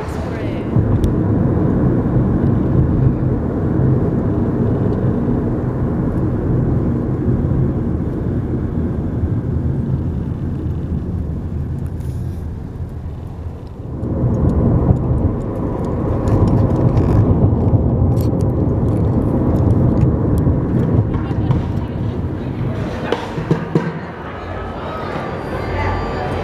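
Steady low rumble of road and engine noise from inside a moving car, with a short break about halfway through. Near the end, sharp hits on plastic buckets begin as a street drummer plays.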